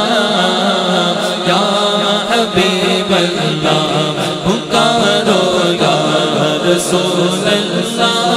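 Devotional naat chant: layered voices chanting over a steady hummed drone, with a few sharp beats scattered through it.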